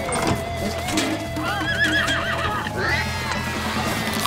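A cartoon horse-whinny sound effect, a wavering neigh lasting about a second, starting about a second and a half in, over background music.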